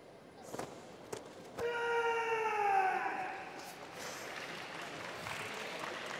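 Two sharp snaps in the karate kata, gi or feet striking, then a karateka's kiai: one long shout that slowly falls in pitch. Crowd applause follows, starting about four seconds in.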